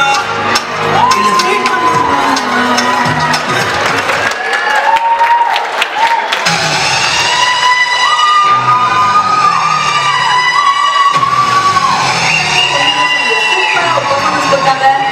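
Dance music with singing, and an audience cheering and whooping over it.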